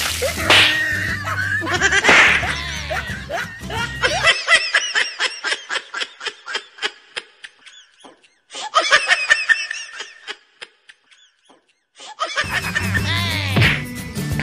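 Background music with a steady bass line breaks off, and a person laughs in quick repeated pulses, in two long bursts with a short pause between. The music comes back in near the end.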